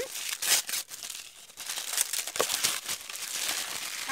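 Packaging crinkling and rustling as a wrapped item is handled and opened, with a short lull about a second and a half in and a sharp click soon after.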